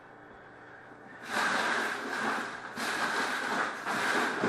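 Rustling and crinkling of trading-card packaging being handled close to the microphone as a new box of cards is opened, starting about a second in and coming in uneven surges.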